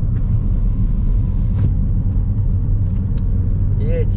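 Steady low road and engine rumble inside a moving car's cabin, with two faint clicks about a second and a half and three seconds in.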